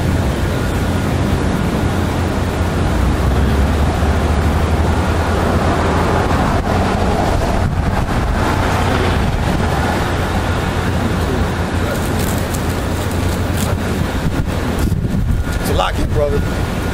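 Steady street traffic noise, a low rumble of passing cars, with wind buffeting the microphone.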